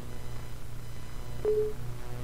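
A single short electronic tone, with a click at its onset, about one and a half seconds in, over a low steady hum: the Windows User Account Control alert sounding as the installer asks permission to install.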